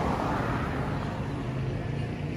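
Steady road and traffic noise from a vehicle driving along a street, with a low hum underneath; a car passes close by in the first half-second.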